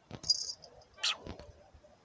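Cat sniffing close to the microphone: a few short, breathy sniffs about a second apart.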